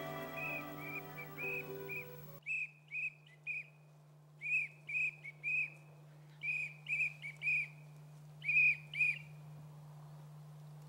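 Background music with sustained notes stops suddenly about two seconds in. A small bird then calls in short high chirps, two or three at a time, over a low steady hum.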